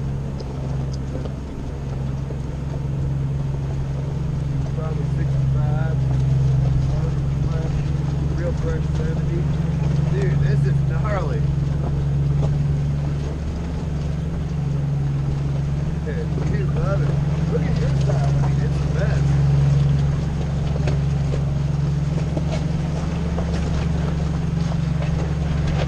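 Jeep Grand Cherokee ZJ's engine running steadily at low revs as it crawls over a rocky trail, a constant low drone, with faint irregular higher sounds over it.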